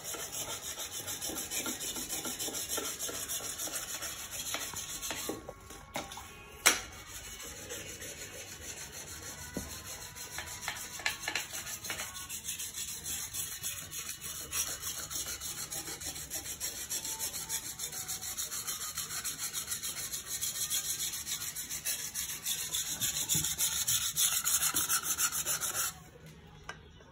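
Wet whetstone rubbed back and forth along the steel blade of a Chinese cleaver in quick, steady, rhythmic strokes, sharpening the edge. One sharp knock about seven seconds in.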